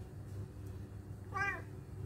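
Domestic cat giving one short meow about one and a half seconds in, rising and then falling in pitch.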